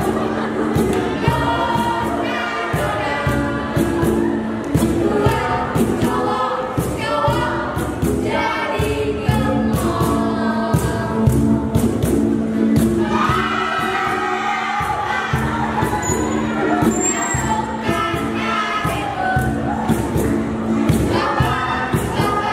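A group of voices singing together over sustained low accompanying notes, with a steady beat of sharp percussive strikes.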